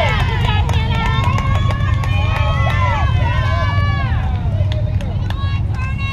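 Several people shouting and cheering at once, their high raised voices overlapping and drawn out, over a steady low rumble.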